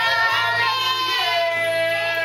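Singing over music, with a voice holding long, drawn-out notes, one sliding down about a second in.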